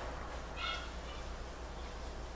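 A steady low hum under faint outdoor background noise, with one short, high bird call about half a second in.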